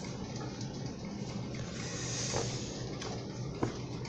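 Soft handling noise from a thick hardcover comics omnibus being leafed through, with a brief swish of glossy pages about halfway through and a couple of light taps near the end, over a steady background hiss from an electric fan.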